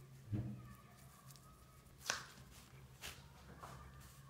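Quiet room with a low steady hum, a short low sound near the start, and then three faint sharp taps as a paintbrush works in a watercolour palette.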